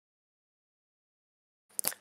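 Silence: the sound track is blank, with only a brief faint sound near the end.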